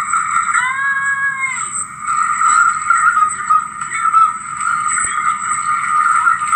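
Audio of a VHS tape playing on a TV, heard through the TV's speaker: a steady, noisy rush of sound effects with a brief held pitched note about half a second in, and a thin high whine underneath.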